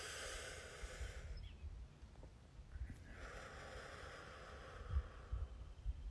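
A man taking deep breaths through the mouth: a short breath in the first second, then a longer one from about three seconds in.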